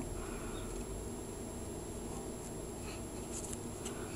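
Faint scratching of a marker pen tracing around a paper template on craft felt, over a low steady room hum.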